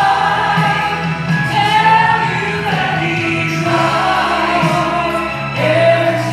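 A woman singing a gospel song through a handheld microphone, holding long notes over instrumental accompaniment.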